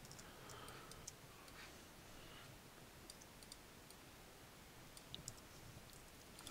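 Near silence: faint room tone with a few soft computer mouse clicks, one about a second in and a small cluster about five seconds in.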